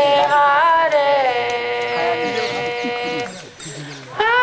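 Devotional chanting: a voice sings a long held note that glides up early on, then holds steady before breaking off about three and a half seconds in.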